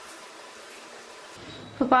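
Faint steady hiss of room tone, then a woman starts speaking near the end.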